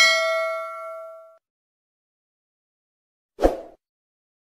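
A bright bell chime sound effect for a clicked notification bell, ringing out with several overtones and fading over about a second and a half. A short sound effect follows near the end.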